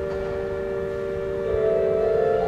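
Pipe organ sustaining a soft, slow chord in the middle register, with a new higher note entering about one and a half seconds in as the chord shifts and grows slightly louder.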